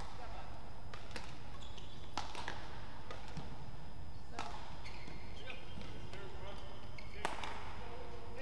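Badminton racket strikes on a shuttlecock: sharp cracks one to two seconds apart, the loudest near the end, with short high squeaks of shoes on the court mat in between and steady arena hum and voices behind.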